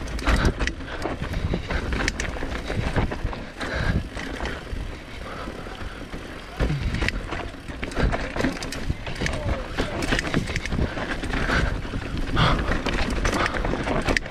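Mountain bike descending a steep, dusty dirt trail: tyres rolling over loose dirt while the bike rattles and clicks over bumps, with low wind rumble on the microphone.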